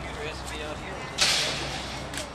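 A sudden short hiss about a second in, the loudest sound here, fading away within half a second, over faint background voices.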